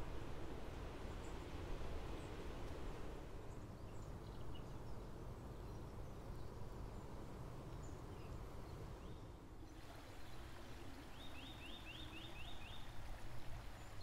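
Quiet woodland ambience with a low rumble and faint distant birdsong; late on, a bird gives a quick series of about six short high notes.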